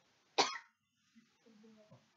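A person coughing once, sharply, about half a second in. A faint low voice follows near the end.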